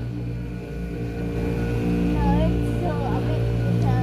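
Small tour boat's engine running with a steady low drone, with faint voices in the background around two seconds in.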